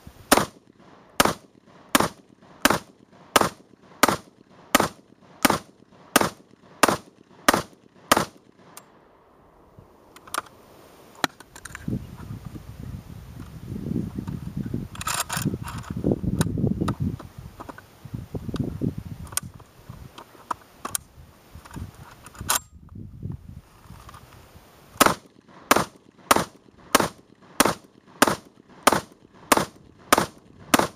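Saiga 12 semi-automatic 12-gauge shotgun in a bullpup stock firing Remington 2¾-inch slugs in a rapid string of about a dozen shots, roughly one and a half a second. A pause of about fifteen seconds follows with handling rumble and a few sharp metallic clicks, then a second rapid string of shots begins near the end.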